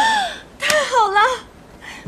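A young woman's wordless, sulky whimpering: a short rising-and-falling "mm", then a longer wavering whine.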